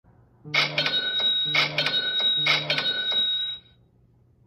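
Smartphone sales-notification alert from the Ticto app, a cash-register-style chime, sounding three times about a second apart with a ringing tone that fades out near the end. Each chime marks a new sale notification arriving.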